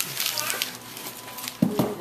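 Family voices in a room, short and broken, over the rustle of gift wrap and a paper gift bag being handled, with one short, louder vocal sound near the end.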